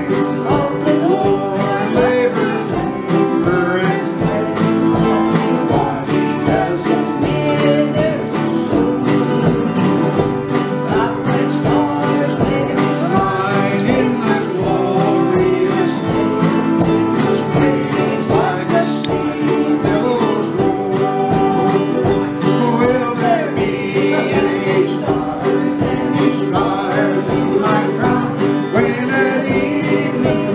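Country-style song with steady strumming from acoustic guitars and a ukulele, and voices singing along.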